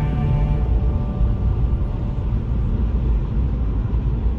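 Steady low rumble of a car driving along a narrow paved road, heard from inside the vehicle. The last held note of background music dies away about half a second in.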